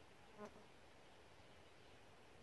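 A flying insect buzzing briefly past about half a second in, over near silence.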